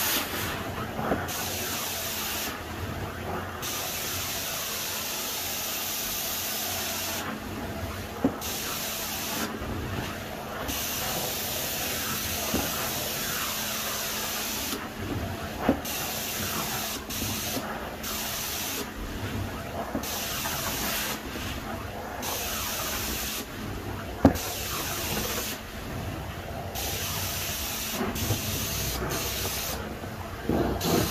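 Carpet extraction wand running over carpet: a steady hiss of suction and water spray. The high part of the hiss drops out for a second or so again and again, and a few sharp knocks sound, the loudest late on.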